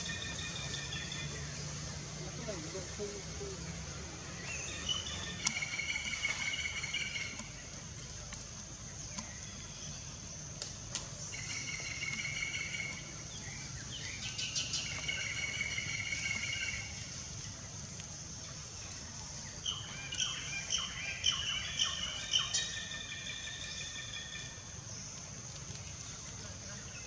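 High-pitched chirping calls that come in short bursts of a second or two, about five times, over a steady high buzz.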